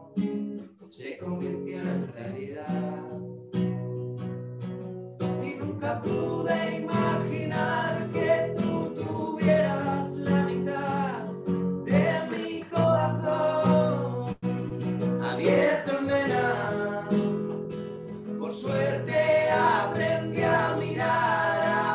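Acoustic guitar strummed live, with two men singing along in harmony.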